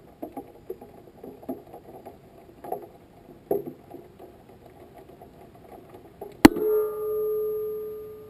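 Faint, irregular clicks and knocks, then about six and a half seconds in a sharp bang followed by a ringing metallic zing that fades over a couple of seconds: the rocket's stage separation, as the booster parts from the upper stage.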